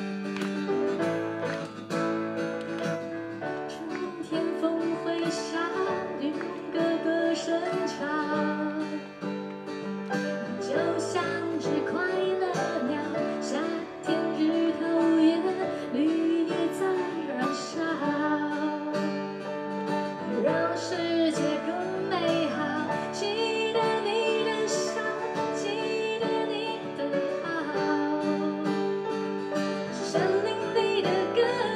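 Live band music: a woman singing a lively Mandarin pop song, accompanied by acoustic guitar and keyboard.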